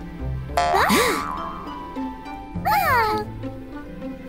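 Children's cartoon background music with a low steady bed, crossed by two swooping pitch glides that rise and fall: one about a second in, another near three seconds.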